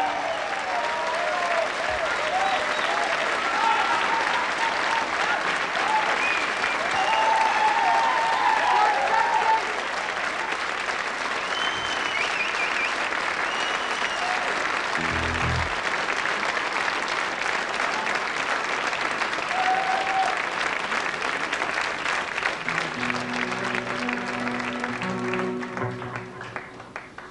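Concert audience applauding, a dense run of hand claps with cheers and whistles over it, mostly in the first half. Near the end, a held chord from the band's instruments starts up under the applause.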